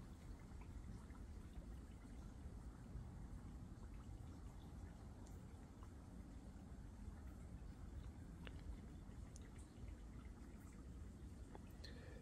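Near silence: faint low background noise with a few scattered faint clicks.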